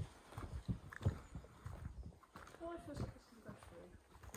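Footsteps of a person walking at an even pace over a hard floor, quiet, with a faint murmur of voice about two and a half seconds in.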